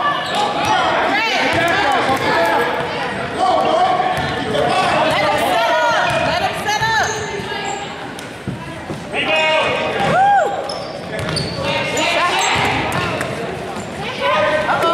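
Basketball bouncing on a hardwood gym floor during live play, with several brief sneaker squeaks. Players' and spectators' voices run underneath, and the gym's echo carries it all.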